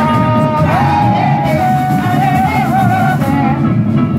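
Samba-enredo played live by a samba school: a singer holding long, wavering notes over the dense, continuous drumming of the bateria.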